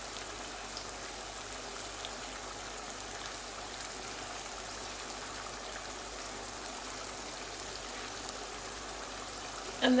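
Tomato masala sauce with lamb kofta simmering at a rolling boil in a frying pan: a steady bubbling and sizzling hiss, with a few faint ticks.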